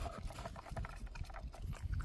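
A dog licking and nosing at a plastic treat puzzle toy, working out hidden treats: a quick run of small clicks and taps.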